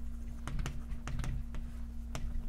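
Chalk writing on a blackboard: a quick series of sharp ticks and short scrapes as the letters are formed, over a steady low room hum.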